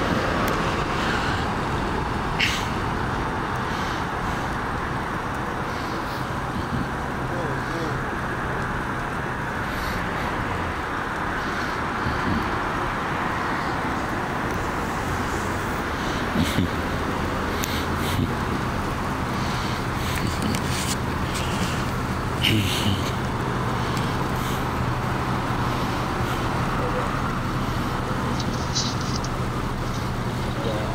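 Street traffic noise with the steady low hum of an idling car engine, which grows stronger in the second half, and a few short clicks.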